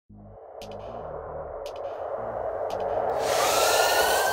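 Synthesized logo-intro whoosh swelling steadily louder over about three seconds, with a faint tick about once a second and low tones beneath. It opens into a bright rushing hiss with gliding tones near the end.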